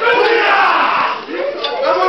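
A group of men shouting a war-dance chant together, many loud voices at once, with the crowd's voices mixed in.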